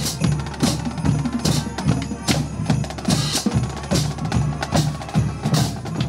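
High school marching band playing: trombones and other brass over a steady beat of snare, bass drum and crash cymbals.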